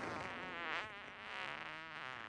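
Comic fart sound effect from a film soundtrack: a long, buzzing fart whose pitch wobbles up and down.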